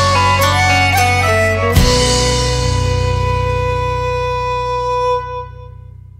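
Celtic-folk band's instrumental ending on acoustic guitar, double bass and fiddle: a few closing notes, then a final chord struck about two seconds in that rings on and fades out near the end.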